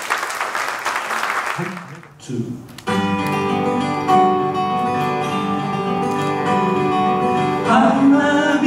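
Audience applause dying away over the first two seconds, then two acoustic guitars start strumming a folk song's intro about three seconds in and play steadily on. A voice begins singing near the end.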